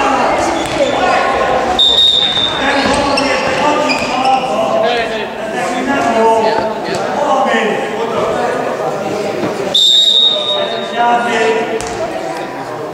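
Handball bouncing on a sports-hall floor amid shouting voices, echoing in the hall. A referee's whistle sounds twice, about two seconds in and again near the end.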